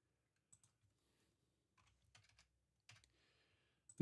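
Near silence, with a few faint computer keyboard clicks spaced about a second apart.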